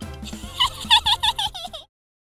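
Playful cartoon music ending in a quick run of about six short warbling, chirp-like notes over a low backing, cutting off suddenly just before the end.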